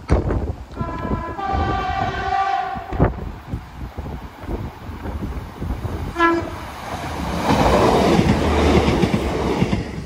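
Class 150 diesel multiple unit sounding its two-tone horn, a high note then a longer lower one, about a second in, then a short toot about six seconds in. Its engine and wheel noise grow louder as it approaches, loudest over the last couple of seconds.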